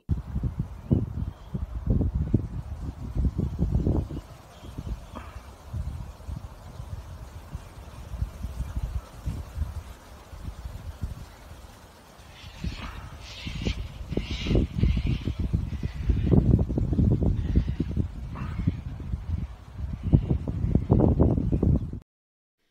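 Wind buffeting the microphone in uneven gusts, with a few birds calling about halfway through and again briefly a little later.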